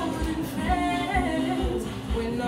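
A woman singing solo, holding long wavering notes with no clear words, over a soft low thump about twice a second.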